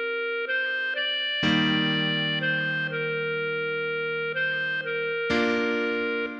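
Clarinet melody played from the score at half speed in slow held notes, over a backing track of sustained chords. A fuller low chord comes in about a second and a half in and again near the end.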